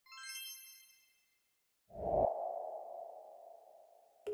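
Electronic intro sound effect: a bright, high chime that fades within about a second, a short silence, then a deep boom near the middle with a lingering hum that slowly fades away.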